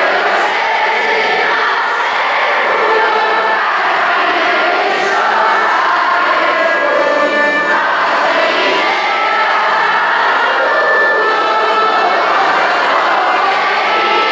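A large group of children singing a song together, many voices at once, steady and without pause.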